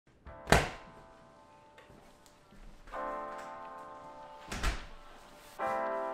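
Two door thuds, a sharp loud one about half a second in and another near the five-second mark, with piano chords ringing out about three seconds in and again near the end.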